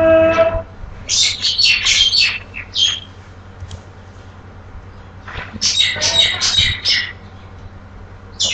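A bird chirping and squawking nearby in two bursts of quick, high calls, about a second in and again from about five and a half seconds in.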